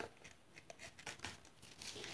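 Faint rustling of a paper packet with a few light clicks as it is handled and a spoon is worked in a plastic container.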